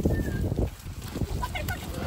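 Goats scuffling and stamping on dry earth as one is grabbed out of the herd. A few faint, high, falling chirps sound over it.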